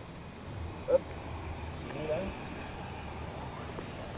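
A short exclaimed 'up!' about a second in and a brief murmured voice a second later, over faint, low, steady background noise.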